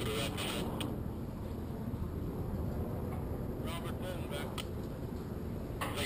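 Wind rumbling on an outdoor action camera's microphone, with brief snatches of indistinct voices at the start and again a little past halfway.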